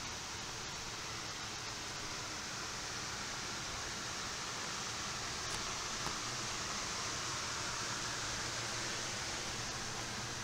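Hoop house ventilation fan running on its low setting, a steady rush of air, pulling air through the greenhouse to cool it.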